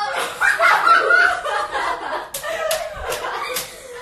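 Girls' voices and laughter, then four sharp hand slaps in quick succession in the second half.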